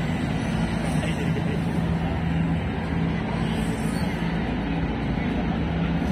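Busy indoor hall ambience: indistinct voices of a crowd over a steady low hum.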